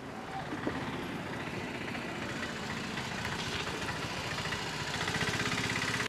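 Street traffic with a motor vehicle's engine running, growing gradually louder with a fast, even pulsing toward the end, then cutting off abruptly.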